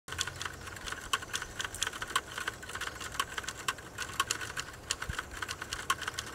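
Typing: a quick, irregular run of key clicks, several a second.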